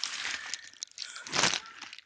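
Handling noise of a phone held and moved in a hand: two short bursts of rustling and crunching, the second about a second and a half in.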